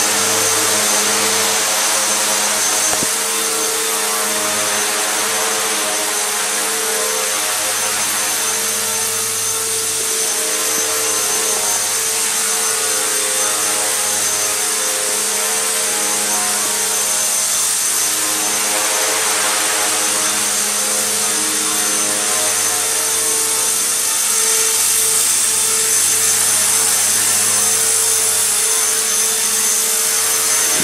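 Align T-Rex 250 electric RC helicopter in flight: a steady buzzing hum from its motor and main rotor, with a constant hiss on top.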